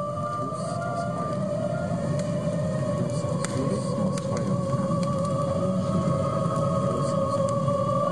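Sound composition of a gallery installation: one long held drone tone, wavering slowly in pitch over a low steady rumble, gradually swelling a little.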